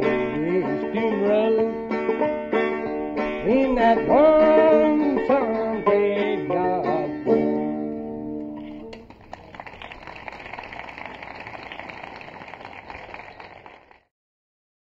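Bluegrass string band, banjo to the fore, playing the last bars of a song and stopping about eight to nine seconds in. Applause follows as a softer, even crackle until near the end.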